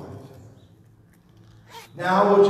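A pause in a man's sermon through a handheld microphone: his voice fades out at the start, a quiet gap follows, and a brief sharp sound comes just before he speaks again.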